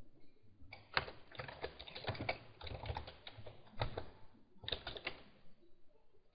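Computer keyboard typing: a run of faint, irregular key clicks starting about a second in and stopping shortly before the end.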